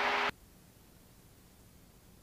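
Small plane's engine hum and hiss heard through the headset intercom, cutting off abruptly about a third of a second in as the voice-activated intercom closes; after that, near silence.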